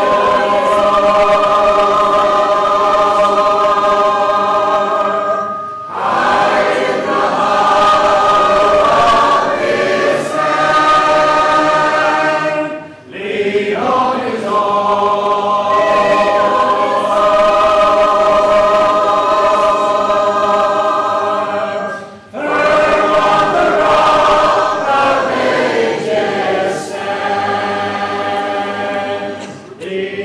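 Church congregation singing a hymn a cappella, many voices holding long notes together, with a short break between phrases about every seven to nine seconds.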